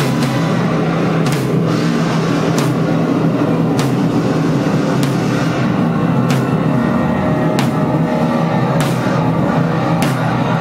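A live band playing loud experimental music: a dense, steady drone from synth and amplified instruments, with a sharp drum or cymbal hit landing about every one and a quarter seconds.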